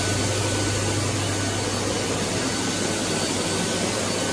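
Blade-type hand dryer running at full power: a steady, loud rush of air over a low hum.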